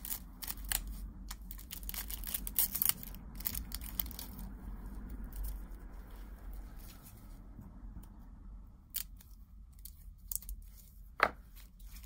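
Gloved hands opening and handling the packet of a roll of nail transfer foil: rustling and clicking of plastic and card packaging, busiest in the first few seconds. It quietens in the middle, and a few sharp clicks come near the end.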